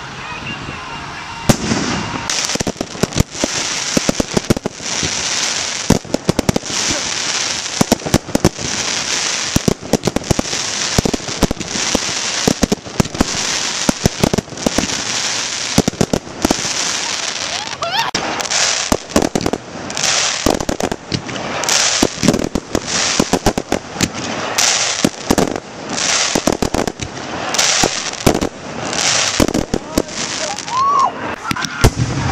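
Fireworks display: a dense barrage of sharp bangs from bursting aerial shells, several a second, mixed with repeated bursts of crackling from crackling-star effects.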